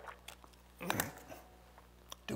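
A man's single short cough, about a second in, preceded by a small breath sound at the start.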